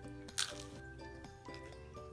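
Soft background music of held keyboard-like notes, with a single sharp crunch about half a second in as a tortilla chip is bitten.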